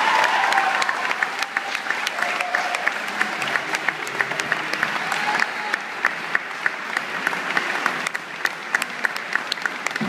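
Audience applauding at the end of a concert band piece, a dense steady clapping with individual claps close by standing out sharply.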